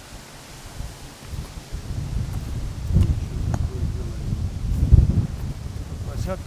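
Wind buffeting the microphone: an uneven low rumble that swells in gusts about halfway through and again near the end.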